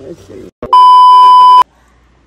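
A loud electronic bleep: one steady, pure high tone lasting just under a second that cuts in and off abruptly. It is a tone added in the edit, not a sound from the scene.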